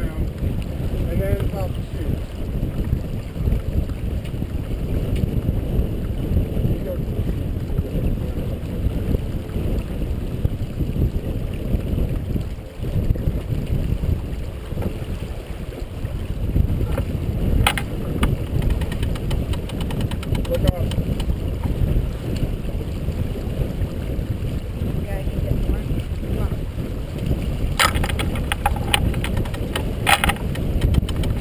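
Steady wind buffeting the microphone and water rushing past the hull of a C&C 34/36 sailboat under sail. A single click comes about halfway through, and near the end a quick run of clicks as a cockpit sheet winch is worked with its handle.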